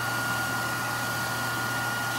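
Hair dryer running steadily: an even rush of air with a thin, constant whine.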